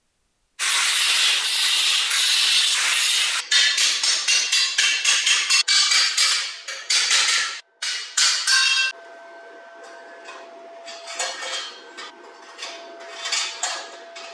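Electric arc welding on steel square tubing: the arc's loud steady crackle starts about half a second in, then breaks into short crackling bursts until about nine seconds in. After that, quieter clinks of the metal frame being handled over a faint steady hum.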